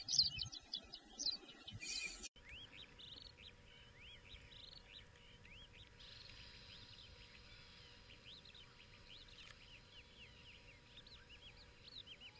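Faint outdoor ambience of many small birds chirping and calling continuously, with a faint steady hum under it; the background changes abruptly about two seconds in.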